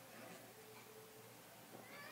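Near silence: room tone in a pause, with a faint thin tone from about half a second in to about a second in and a few faint tonal traces near the end.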